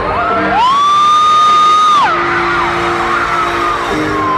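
Live pop concert music heard from the arena stands, with steady held chords. About half a second in, a high voice glides up, holds one note for about a second and a half, then drops off.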